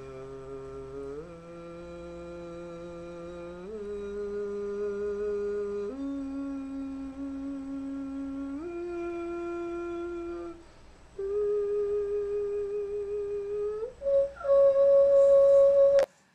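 A person's voice holding steady sustained tones for a stroboscopic exam of the vocal folds, stepping up in pitch about five times. The voice breaks off briefly about ten seconds in, and the last tone, near the end, is the highest and loudest.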